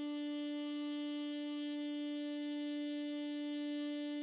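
Soundtrack music: one long held note on a wind instrument, steady in pitch and bright in tone.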